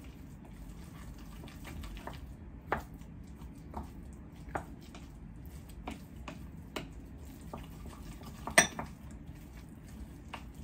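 A utensil stirring and mashing guacamole in a bowl, knocking irregularly against the bowl about once a second; the loudest knock comes near the end.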